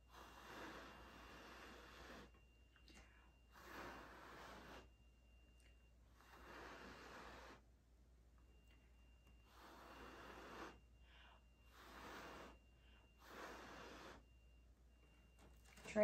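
A person blowing by mouth across wet fluid acrylic paint on a canvas: about six soft, breathy puffs of air, each one to two seconds long, with short pauses between, pushing the paint around by breath instead of with a hair dryer.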